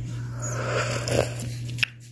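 Someone eating hot food: noisy slurping and chewing, with one sharp click near the end.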